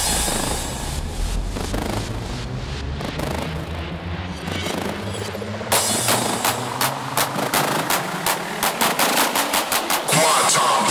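Hardcore electronic music in a breakdown: the pounding kick drum drops out, leaving a sustained synth texture. About six seconds in, a rapid drum roll starts and builds, with the hits coming closer together near the end.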